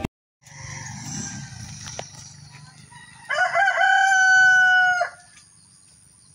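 A rooster crowing once, a single long call of nearly two seconds that starts about three seconds in, over a faint outdoor background.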